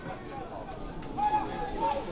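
Voices calling out across a football pitch during open play, with one drawn-out call from about a second in.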